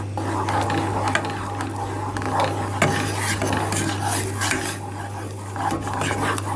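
Wooden spoon stirring a thick raspberry and chia seed jam mixture in a metal saucepan, with irregular scrapes and knocks against the pan over a steady low hum.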